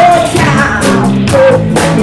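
A live rock band playing an original song, with electric guitars and a drum kit keeping a steady beat, and a child singing the lead.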